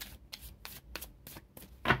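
Tarot cards being shuffled by hand: a run of quick papery riffling strokes, about three a second, with a louder stroke near the end.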